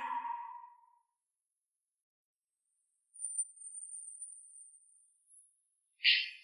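A faint, thin, very high-pitched steady tone that comes in about three seconds in and holds for about two seconds, with near silence around it.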